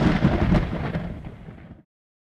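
A thunder-like rumbling boom used as a sound effect in an edited video, fading steadily over about two seconds and then cutting off suddenly near the end.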